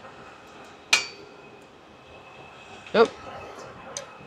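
A single sharp metallic click with a brief ring about a second in, as an aircraft engine sensor's electrical connector is handled and fitted by hand against the metal fitting.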